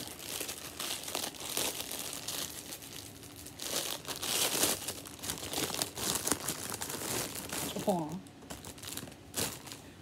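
Clear plastic packaging crinkling and rustling as it is handled and pulled open to unwrap a pair of baby shoes.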